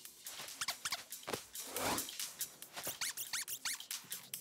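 Cartoon sound effects: a quick run of small clicks with a few short squeaks.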